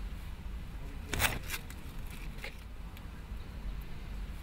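A small plastic bag being handled and turned over, giving a short crinkle about a second in and a couple of fainter clicks, over a low steady background hum.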